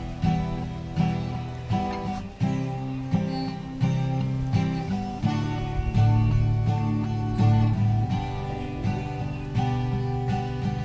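Acoustic guitar strummed in a steady rhythm, the chords changing as it goes, with no singing.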